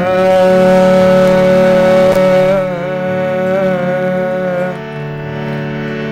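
Live Afghan-style ensemble of harmonium and acoustic guitar playing a slow song introduction over a steady harmonium drone. One long melody note is held, then bends and wavers and dies away just before the end.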